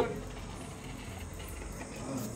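Faint steady background ambience with a thin, continuous high-pitched insect chirring.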